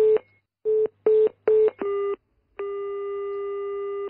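Telephone line tones: a run of short beeps on one pitch, about two to three a second, in two groups of three, as the line goes busy after a hang-up. About two and a half seconds in, one longer steady ringing tone of about a second and a half follows as the number is called again.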